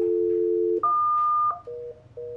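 Conference speakerphone with a steady dial tone, cut off just under a second in by a higher beep. Near the end a fast, pulsing busy signal starts: the call is not going through.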